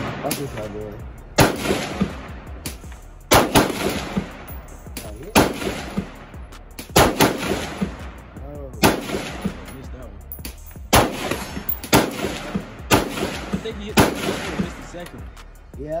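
Rifle shots at a shooting range: about a dozen sharp cracks at uneven spacing, roughly one to two seconds apart, from an AR-style rifle and neighbouring shooters.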